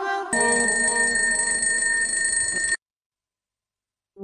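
Electronic alarm clock ringing with a steady high tone, cut off suddenly after about two and a half seconds, then dead silence.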